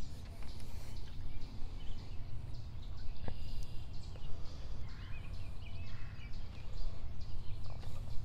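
Steady low rumble of outdoor background noise, with a few faint, short bird chirps between about five and seven seconds in.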